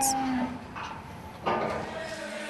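A cow mooing, with a long call that begins about a second and a half in.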